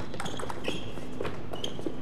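Table tennis rally: the celluloid ball clicks sharply against the rubber-faced bats and the table, several times in quick irregular succession. A couple of short, high squeaks come in about halfway and again near the end.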